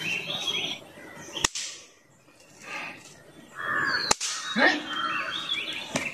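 Two sharp single pops, the first about a second and a half in and the second about four seconds in: pop-pop snap crackers, small paper twists of grit with a pinch of explosive, bursting as they are thrown onto the ground.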